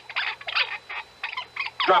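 Capuchin monkey chattering in about four short, high-pitched wavering bursts, a radio-drama animal effect.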